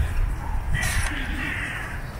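A bird calls once, starting a little before the middle and lasting about a second, over a steady low rumble.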